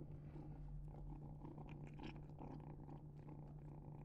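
A kitten purring faintly while it eats wet cat food, with small chewing clicks.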